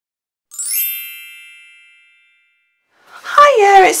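A single bright, sparkly chime sound effect over a logo title card, ringing out and fading over about two seconds. A woman starts speaking near the end.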